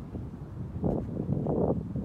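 Wind buffeting the microphone: low, uneven rumbling gusts that get stronger about a second in.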